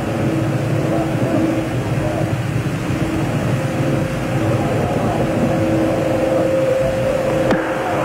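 A steady rushing noise with two faint steady hum tones, heard through muffled, band-limited old broadcast audio.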